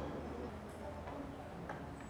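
Open-air background rumble with a few faint, sharp ticks scattered through it.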